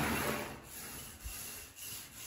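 Paint roller on an extension pole rolling sealer onto a plastered wall: a soft rubbing, louder at the start and quieter after about half a second.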